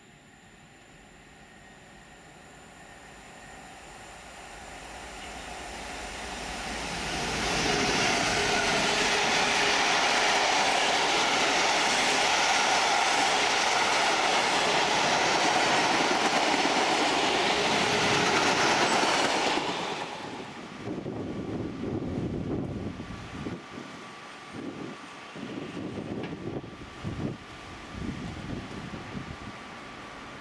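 Diesel freight train: a Class 66 locomotive's engine grows steadily louder as it approaches, then a long rake of freight wagons rushes past with a loud, even roar of wheels on rail for about twelve seconds. The sound drops off suddenly just under twenty seconds in, leaving an uneven, gusty rumble.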